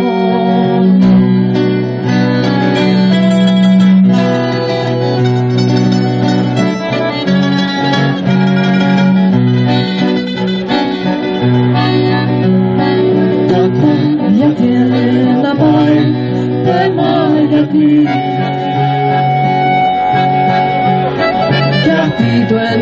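Live acoustic folk music from a small band: accordion and acoustic guitar playing together, with long held low notes under the tune.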